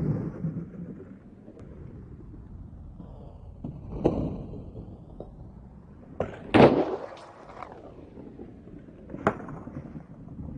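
Skateboard doing 360 flips on concrete: sharp tail pops and loud landing slaps of the board and wheels, several times, the loudest about six and a half seconds in. Between them the wheels roll with a steady low rumble.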